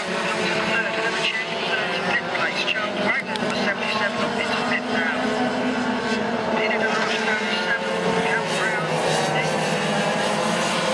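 A field of racing kart engines heard from trackside, several droning at once and rising and falling in pitch as the karts accelerate and brake through the corners.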